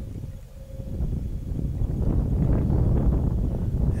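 A low, steady rumble on the microphone. It dips briefly about half a second in, then builds back up and holds.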